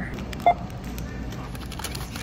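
Self-checkout scanner giving one short, high beep about half a second in, over steady store background noise.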